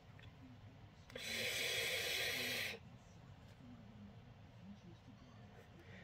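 Air drawn through a Hellvape Fat Rabbit RTA's airflow slots on an inhale, with the bottom airflow fully open and the top partly closed. It gives one steady airy hiss, starting about a second in and lasting under two seconds.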